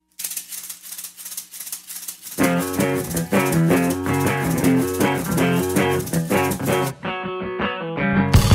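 Opening of a post-hardcore rock song: a fast, even rattling rhythm starts out of silence, and about two seconds in electric guitar and bass come in playing a riff. The music thins briefly near the end.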